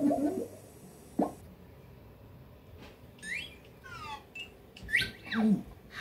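Cartoon sound effects played through a TV speaker: a short swoop about a second in, then, after a quiet stretch, a run of quick whistle-like glides up and down, the last sweeping up high and dropping low near the end.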